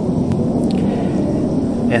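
Wind blowing across the microphone, a steady low rumble.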